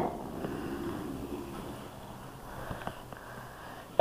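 Metal Beyblade spinning top, just launched, whirring as it spins and travels across a hardwood floor and fading gradually, with a few faint clicks about three seconds in.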